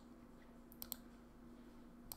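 A few faint, sharp clicks of computer controls, three of them close together a little before the middle, over near silence with a faint steady hum.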